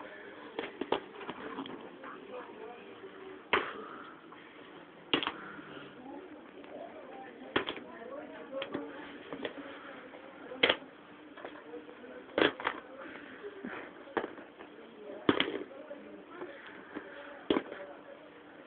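Sharp knocks of hard objects striking, about ten at irregular intervals, over faint low talking.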